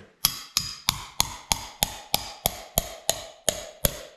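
Hammer striking a metal piece held against a pipe set in a concrete wall, about three steady blows a second, each ringing briefly. The blows drive the torch-heated pipe, now breaking loose, out through the wall.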